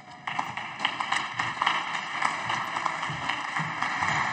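Applause from the deputies in the chamber: many hands clapping, a dense run of claps that begins a moment in and carries on.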